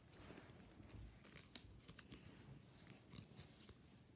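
Faint rustling and scattered light clicks of paper playing cards being handled and leafed through while a deck is searched.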